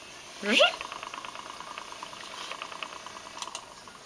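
Electric spinning wheel (Hansen Mini-spinner) switched on: a short rising whine about half a second in as it spins up, then a steady motor hum with fast, even ticking as the flyer turns. The sound fades near the end.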